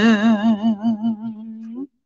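A man's voice chanting Khmer smot, holding the last note of a phrase with a wavering vibrato that fades and stops near the end.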